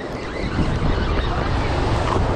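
Wind buffeting the microphone over surf washing against sea rocks: a deep, steady noise that grows a little louder about half a second in.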